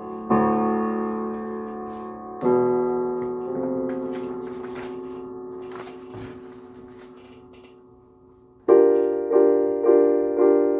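Digital piano: a sustained chord struck at the start and another about two seconds later, both left ringing and slowly fading, with soft paper rustling and small knocks as the sheet music is handled. Near the end the playing resumes with loud repeated chords about every half second.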